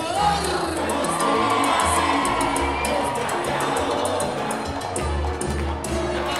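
Live salsa band playing, with its bass line and percussion strokes, while the audience cheers and shouts over the music.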